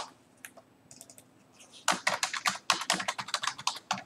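Typing on a computer keyboard: a few faint clicks, then a quick, continuous run of keystrokes starting about two seconds in.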